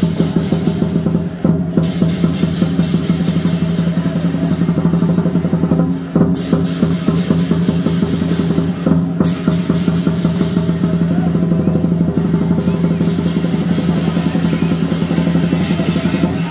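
Lion dance percussion: a large Chinese drum beaten in rapid, driving strokes with clashing cymbals over it. The cymbal clashing drops out briefly every few seconds, while a low ringing tone carries on underneath.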